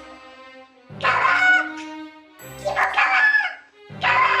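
A person's shrill, drawn-out squeals of 'kawaa!' ('so cute!') twice, each about a second long, over quiet background music.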